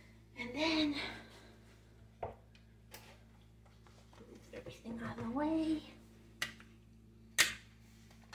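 A woman's voice twice, in short wordless sounds that rise in pitch, with a few sharp knocks of a metal potato masher against a stainless steel pot, the last one the loudest.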